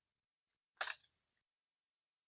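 Near silence broken once, just under a second in, by a short soft rustle of a stack of Pokémon trading cards being handled.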